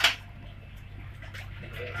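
Steady low hum inside a passenger train carriage, with a sharp click right at the start and a few faint knocks.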